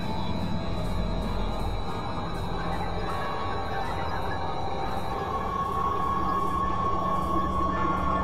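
Dense, layered experimental electronic drone music: sustained tones over a noisy wash, with a higher steady tone entering about five seconds in.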